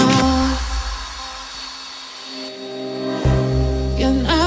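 Background pop music: one song fades down and, about three seconds in, another begins with sustained chords and a bass line.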